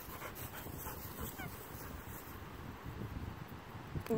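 Faint sounds of a large black dog close to the microphone over a quiet outdoor background, with one faint short falling whistle about a second and a half in.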